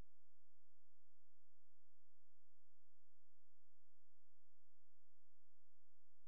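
Steady, low-level electronic hum: a low buzz with thin, unchanging high tones above it.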